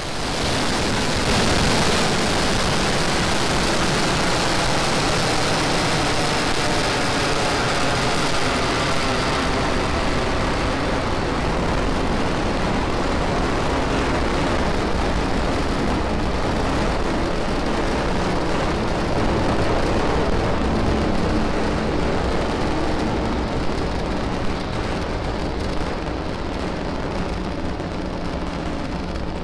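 The nine Merlin 1D engines of a Falcon 9 first stage climbing away just after liftoff: a loud, steady, dense rocket noise. Its high end gradually fades from about ten seconds in as the rocket gains altitude.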